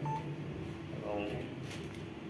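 A short electronic beep, one brief steady tone right at the start, with a man's speech around it.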